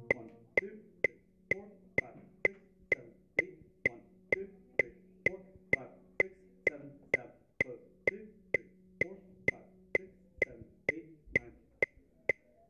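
A sousaphone's low held note stops right at the start, leaving a metronome clicking steadily, a little over two clicks a second. Faint soft steps on a tile floor fall between the clicks as the player marks time through the rest.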